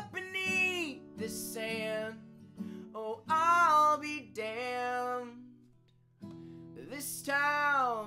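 A solo voice sings a folk-country song over strummed acoustic guitar. The playing breaks off briefly just before six seconds in, then resumes.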